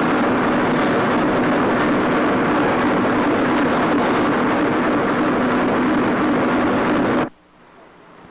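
Steamship's steam engine running in the engine room: a loud, steady mechanical rush with a constant low hum underneath, cutting off suddenly near the end.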